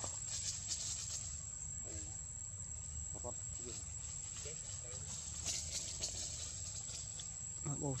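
Insects droning in a steady, high-pitched whine over a low rumble, with a few faint short calls in between.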